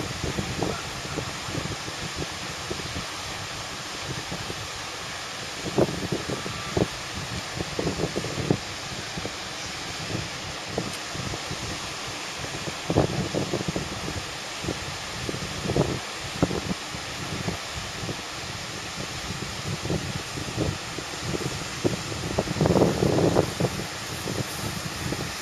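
Wind buffeting the microphone in irregular gusts, strongest near the end, over a steady rush of wind and breaking surf. The fairly strong onshore wind is blowing in off the sea.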